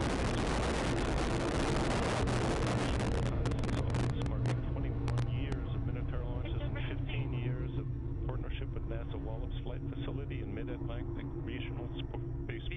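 Minotaur I rocket's solid-fuel motor at liftoff: a loud, rushing noise over a deep steady rumble. About three seconds in the hiss loses its high end, and the low rumble carries on under voices.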